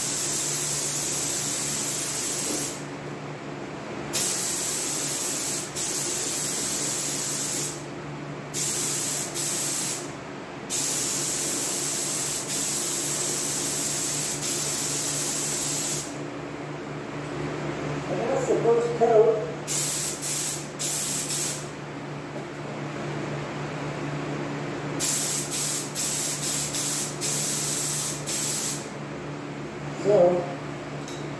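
Gravity-feed paint spray gun hissing in long bursts as the trigger is pulled for each pass of red base coat, the passes turning shorter and choppier in the second half. A steady low hum runs underneath, and a brief louder sound comes about two-thirds of the way through.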